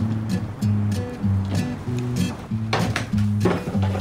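Background music: a bass line stepping between low notes under a beat of short percussive hits.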